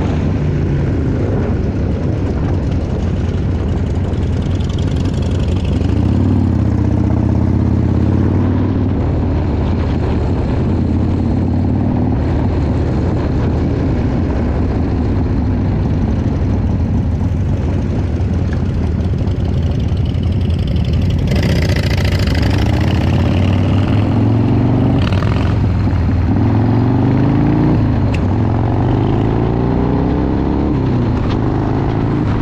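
Harley-Davidson Dyna Low Rider V-twin running on the move, its pitch rising as it accelerates a few times, most in the second half, with wind noise over the microphone throughout, strongest a little after twenty seconds in.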